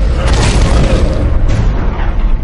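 Film sound effect: a loud, deep boom with a rushing noise that swells just after the start and falls away about a second and a half in, over a deep rumble and orchestral score.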